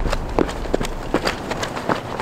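Quick footsteps of work boots on asphalt, about three steps a second, as someone dances and skips across the pavement.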